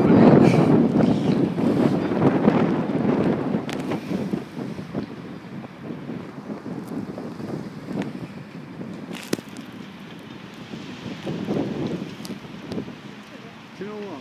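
Wind buffeting the microphone: an uneven, gusting low noise, strongest in the first few seconds and easing after about four seconds, with a couple of short sharp clicks.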